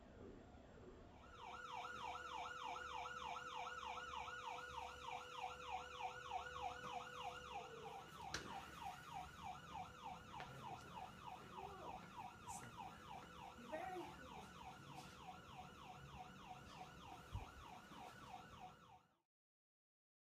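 Ambulance siren in fast yelp mode, its pitch sweeping up and down several times a second, starting about a second in and cutting off suddenly near the end. A faint steady tone sits under it for the first half.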